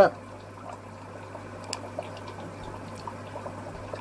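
Steady aquarium water movement, a soft trickling and bubbling of circulating tank water, with a low hum underneath.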